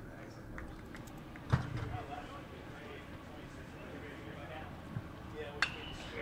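Faint ballpark crowd murmur with a sharp knock about one and a half seconds in, the loudest sound. A lighter crack of the bat meeting the ball comes near the end as the batter hits a flare.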